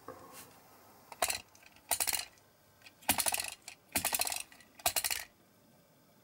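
Small diecast metal model car being rolled to and fro on a cutting mat: five short runs of fast rattling clicks from its wheels and axles.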